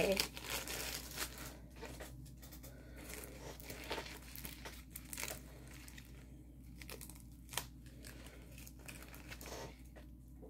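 Clear plastic wrapping on a rolled diamond painting kit crinkling and crackling as it is handled, in scattered bursts with one sharper crackle about three quarters of the way through.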